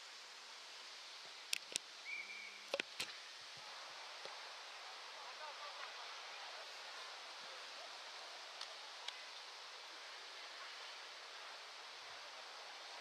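Outdoor football-pitch ambience: a steady wash of wind-like noise with faint distant shouts from players. A cluster of sharp knocks comes about one and a half to three seconds in, with a short high tone among them.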